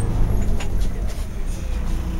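City bus heard from inside the passenger cabin: a steady low rumble from the running vehicle.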